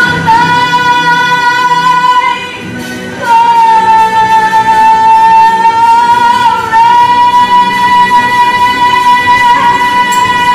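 Solo female voice belting long, sustained held notes over a musical accompaniment. One note is held for about two and a half seconds, then after a short break a second long note is held to the end, with a brief catch near the middle.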